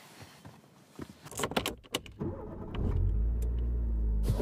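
A few sharp key clicks in a car's ignition, then the car's engine starts a little over two seconds in and settles into a steady low idle.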